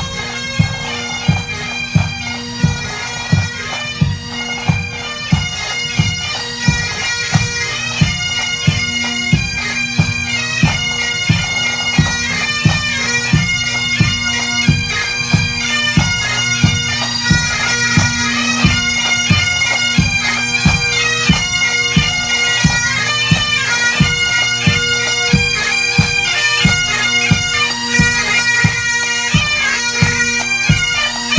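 Pipe band playing a march: Highland bagpipes sounding a steady drone under the chanter melody, with a drum beat of about one and a half strokes a second. It grows louder as the band draws near.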